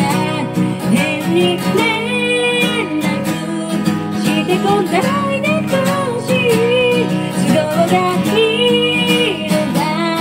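A woman singing a Japanese pop song into a microphone, accompanied by a strummed acoustic guitar.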